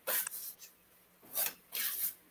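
A deck of oracle cards being shuffled by hand, card stock sliding against card stock in three short brushing sounds: one at the start, then two close together about a second and a half in.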